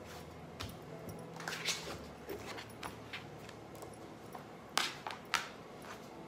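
Clothes being handled on a granite countertop: fabric rustling and light taps as a plastic folding board is laid onto a top, with two sharper taps near the end.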